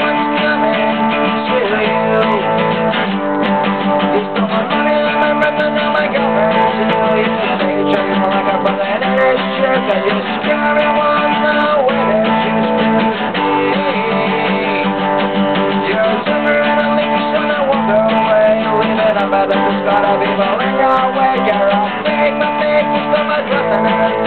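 Black cutaway acoustic guitar strummed in a steady, driving rhythm, chords ringing without a break.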